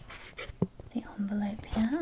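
A few small, sharp paper clicks as a little black card envelope is handled and opened by hand, then a soft hummed "mm-hmm" in the second half.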